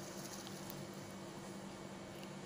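Faint, steady sizzle of hot cooking oil in an aluminium kadai, with batter-coated cabbage beginning to fry.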